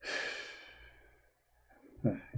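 A man's long exasperated sigh, starting sharply and trailing off over about a second, while he fails to find a hadith on the website.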